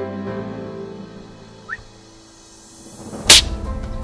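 Soft background music, then about three quarters of the way in a single loud, sharp shot from a PCP air rifle fitted with a large moderator, firing a slug at a guineafowl.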